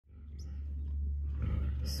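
Steady low rumble of wind buffeting the microphone, fading in at the start.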